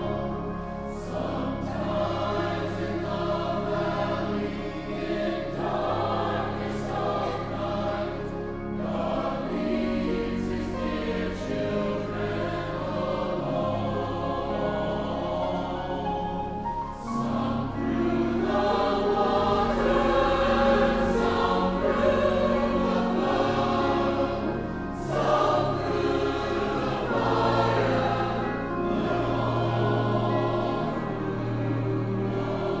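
Choral music: a choir singing sustained lines, growing louder a little past halfway through.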